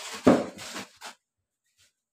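A sudden knock about a quarter second in, then a short rustle and a faint tap, from boxed goods being handled in an open cardboard carton.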